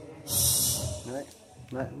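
A man's voice through a karaoke microphone and loudspeakers: a loud breathy hiss into the mic, then a couple of short vocal sounds with reverb. With the mic turned up high near the speakers there is no feedback howl.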